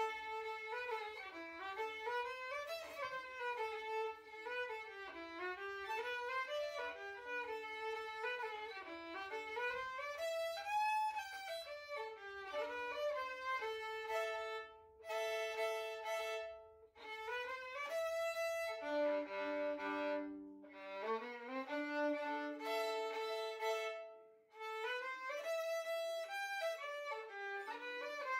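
Background music: a violin playing a flowing melody, note after note, with two brief breaks in the phrasing.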